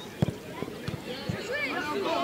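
Voices of players and onlookers calling out across an outdoor football pitch, growing louder near the end, with a few low thumps in the first second and a half.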